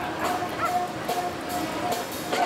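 Music playing with held notes, and a dog barking briefly over it a couple of times.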